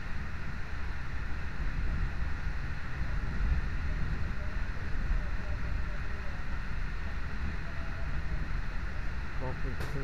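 Steady rumble and rush of a passenger train running at speed, heard from inside the carriage by the window.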